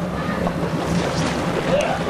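Boat engine running at idle, a steady low hum under wind and water noise.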